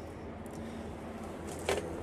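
Quiet room tone: a steady low hum with faint hiss, and one brief faint sound near the end.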